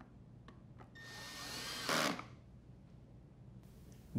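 Cordless drill driver running for about a second, driving a screw into the dishwasher's plastic inner door, its whine climbing in pitch and growing louder until it stops abruptly. A couple of faint clicks come before it.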